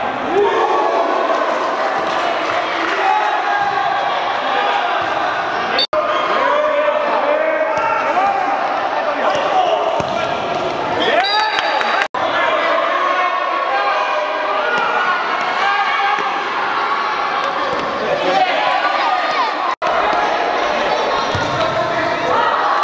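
Spectators and young players shouting and calling out in a reverberant indoor hall, with a futsal ball thudding off feet and the hard court floor. The sound cuts out for an instant three times, at edit joins.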